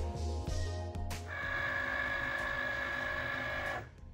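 Background music, then about a second in a Cricut Explore Air 2 cutting machine runs with a steady motor whine that starts suddenly and cuts off just before the end, as it cuts a print-then-cut vinyl sheet on its mat.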